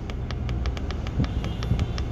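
Rapid, even clicking, about five a second, as the temperature-down button on a ProAir climate control panel is pressed again and again, over a steady low hum.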